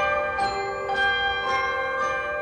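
A chime melody of bell-like struck notes, about two notes a second, each ringing on under the next.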